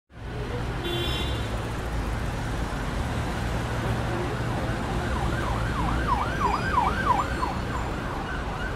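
City street traffic, a steady rumble. From about five seconds in, an emergency vehicle's siren yelps up and down about two and a half times a second.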